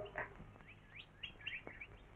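Faint bird chirping: a quick string of short, high chirps that rise and fall in pitch, running through the middle and second half.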